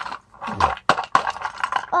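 A small box of little plastic toys, Shopkins among them, tipped out onto the carpet: a quick clattering run of clicks and rattles as the pieces spill and knock together.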